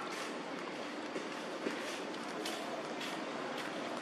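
Steady outdoor background noise with a couple of soft clicks a little after one second in.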